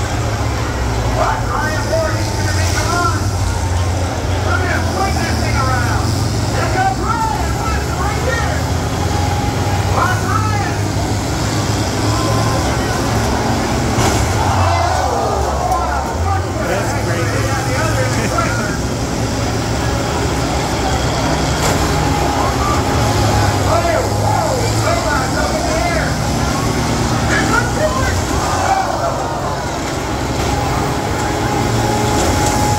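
Large combine harvesters' engines running and revving during a demolition derby, with a crowd shouting and cheering over them.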